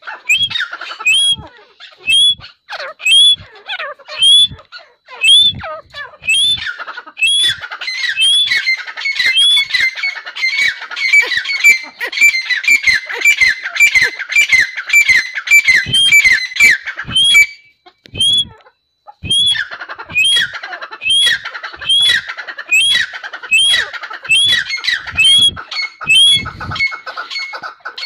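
A young grey francolin (Dakhni teetar) calling over and over in short, sharp, high calls. The calls come a little under one a second at first and crowd together faster in the middle. They stop briefly about two-thirds of the way through, then start again.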